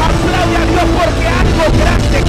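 Loud live worship band with drums and guitar playing energetically, with voices over it.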